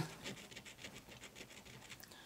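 A coin scraping the coating off a lottery scratch-off ticket: a faint run of quick, short scratching strokes.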